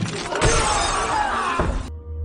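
A pane of glass shattering into pieces with heavy low thuds, a dramatised film sound effect of a bridge panel giving way under a player's weight. The crash cuts off suddenly just before the end.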